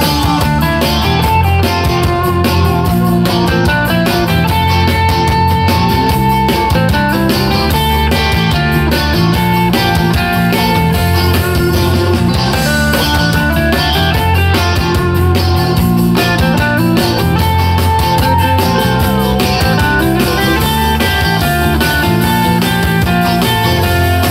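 Live rock band playing an instrumental passage with no singing: electric guitars, bass and drums, with held lead-guitar notes over a steady beat.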